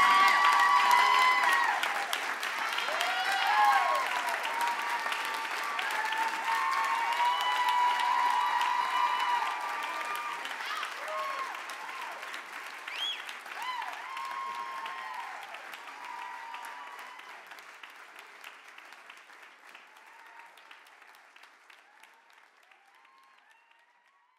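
Theatre audience applauding and cheering after a song, with shouts and whoops over the clapping. The applause fades away gradually toward the end.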